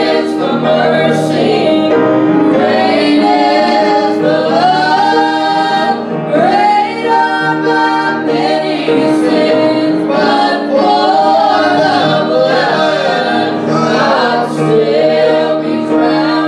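Voices singing a gospel hymn together, with piano accompaniment.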